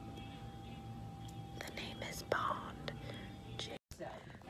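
Faint murmured, whispery voices and a few small clicks over a low steady background hum. The sound drops out for a moment just before the end.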